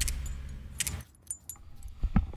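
A low engine rumble fades out in the first second, followed by a few light metallic jingles and clinks.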